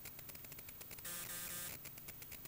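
Faint electrical static: rapid crackling that takes turns with a steady buzz, switching about once a second.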